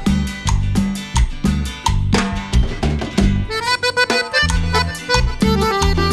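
Live guaracha band playing an instrumental passage: accordion melody over guitar, bass and a steady drum beat.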